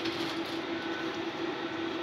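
Automatic egg incubator's air-circulation fan running: a steady hum with one held low tone over an even hiss.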